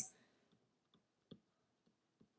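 Faint, scattered clicks of a stylus tapping on a tablet screen while handwriting, the loudest just over a second in.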